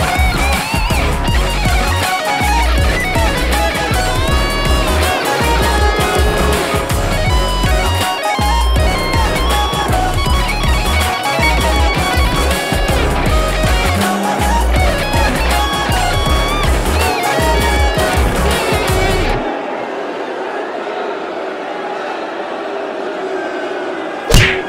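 Electric guitar solo with string bends over a full backing track with a steady drum beat: a reenactment of a solo that went wrong live. The band cuts off abruptly about three-quarters of the way through, leaving a quieter, thinner sound.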